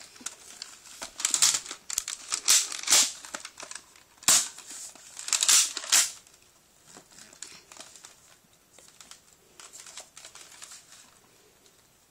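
Rustling, crinkling handling noise close to the phone's microphone, in several loud bursts over the first six seconds, then fainter and sparser.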